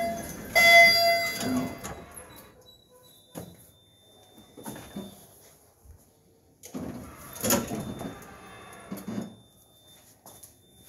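Otis elevator chime dinging once about half a second in and fading, then the lift doors sliding, a few seconds of noise about seven seconds in.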